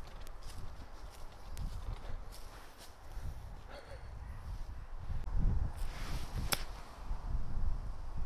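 Wind buffeting the microphone, with faint rustling and scattered light ticks, and one sharp click about six and a half seconds in.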